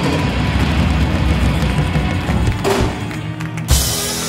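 Rock band playing drums and electric guitar at full volume, building to a loud final drum and cymbal hit near the end, after which the chords ring on and fade.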